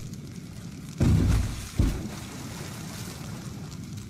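Two heavy, deep footfalls of a giant cartoon monster, about a second apart, over a steady background hiss as it walks away.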